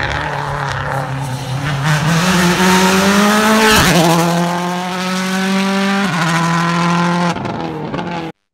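Rally car engine running hard, its pitch climbing and then dropping sharply at gear changes about four and six seconds in.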